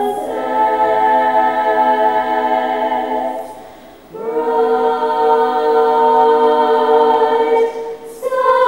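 Female choir singing two long held chords. The first fades away about three seconds in, and the second swells in a second later and is held almost to the end.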